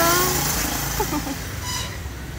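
Steady outdoor background noise with a few short snatches of women's voices and laughter.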